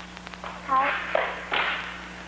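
Brief voice sounds: a short voiced fragment and two breathy, hissy bursts, with a few light taps, over a steady low hum in the soundtrack.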